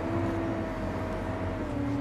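Valtra tractor engine running steadily under way, heard from inside the cab: a low drone with a thin whine above it that drifts slightly lower in pitch.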